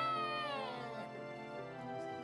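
A young child's high-pitched, drawn-out squeal of laughter, rising and then falling away, over soft background music.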